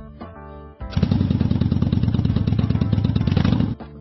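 Motorcycle engine sound effect running at a steady pitch with a fast, even pulse, starting about a second in and cutting off abruptly about three seconds later, over light background music.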